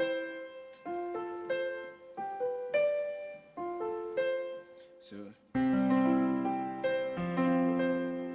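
Digital acoustic-grand-piano sound played from a MIDI keyboard: single notes and simple chords, moving from C to F. About five and a half seconds in it becomes fuller, louder two-handed chords with low bass notes.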